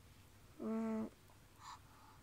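A short hummed note in a child's voice, one steady pitch held for about half a second.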